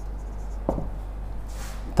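Marker pen writing on a whiteboard: a short tap about two-thirds of a second in and a faint scratchy stroke near the end, over a steady low hum.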